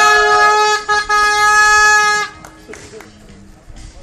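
A horn blown on one steady pitch in two blasts: a short one, then a longer one of about a second and a half.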